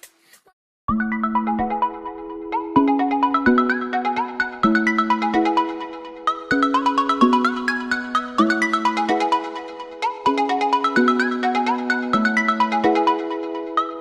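Background music: a bright, chiming melody over a repeating bass line, starting about a second in after a brief silence.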